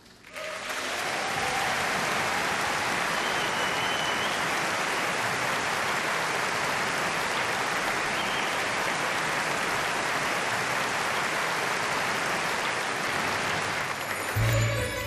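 A large concert audience applauding. The applause breaks out suddenly about half a second in and stays steady and full throughout.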